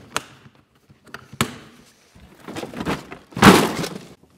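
Hard plastic storage bins being handled: a few sharp clicks as the tote's plastic lid latch is snapped shut, then rustling and a short, loud plastic clatter about three and a half seconds in as a loaded plastic bin is set down on top of the tote.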